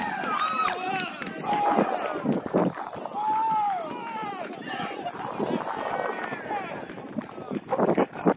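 Football players shouting and calling to one another across the pitch during play, several voices overlapping, with one long drawn-out call about three seconds in.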